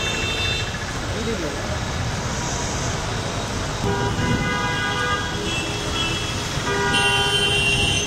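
Heavy rain pouring down on a road, a steady hiss, with vehicles passing through the wet. Car horns sound about four seconds in and again near the end.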